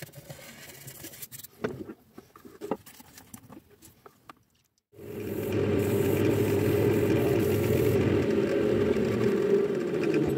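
Quiet, scattered taps and handling sounds, then about halfway through a wood lathe starts sounding suddenly and runs steadily. For the first few seconds of that run an abrasive pad hisses against the spinning, finished wooden bowl.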